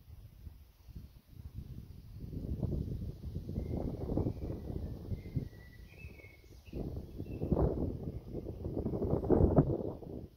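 Wind buffeting the microphone in irregular gusts, rising about two seconds in and again, loudest, near the end. Faint bird chirps sound in the middle.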